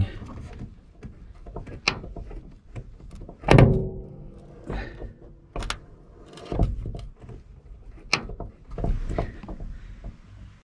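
Steel door hinges and door check strap of a 1973 GMC truck being worked as the door swings: a string of metal clicks and knocks, with one loud thunk about three and a half seconds in that rings briefly. The owner says the door is seizing up.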